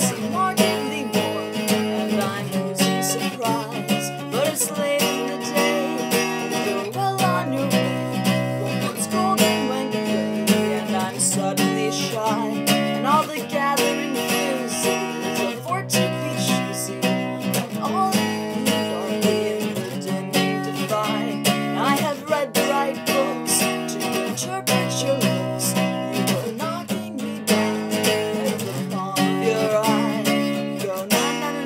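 Steel-string acoustic guitar strummed in chords with a capo on, with a voice singing along over it.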